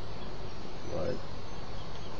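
Steady hiss of insects in the surrounding bush and garden, unchanging throughout, with a single short spoken word from a man about a second in.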